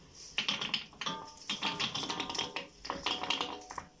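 Tangyuan (glutinous rice balls) tumbling out of a plastic colander into a wok of boiling water. It is a rapid run of light taps and clatters in several bursts.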